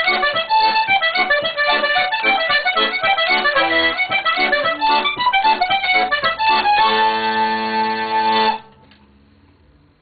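Button accordion playing the last bars of a traditional tune, a quick run of notes that ends on a long held chord, then stops suddenly.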